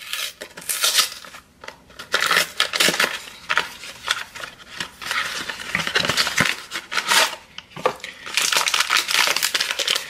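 A cardboard Jell-O pudding box being torn open by hand and its inner paper packet pulled out: irregular crinkling, tearing and rustling of cardboard and paper, with sharp snaps here and there and a dense run of rustling near the end.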